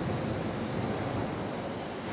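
Steady road noise from a Volkswagen ID. Buzz electric van driving on a dusty gravel track: a continuous tyre rumble and wind hiss with no engine note.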